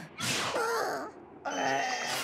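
Cartoon character voices grunting and groaning with effort, in two strained utterances: the first begins just after the start with a rushing noise over it, and the second comes near the end.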